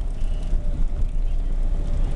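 Car's engine and road noise heard from inside the cabin while driving: a steady low rumble.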